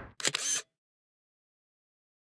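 Single-lens reflex camera shutter firing once: a quick, crisp double click about a fifth of a second in, lasting under half a second.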